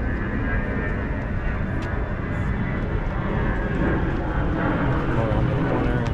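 Steady low rumble of city street traffic, continuous with no distinct events.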